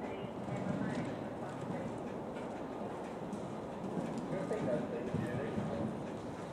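Horse's hoofbeats at the canter on a soft arena surface, with people talking in the background.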